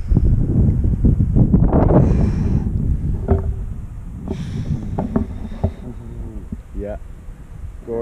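Wind buffeting the camera microphone, a heavy low rumble for the first three seconds that then eases.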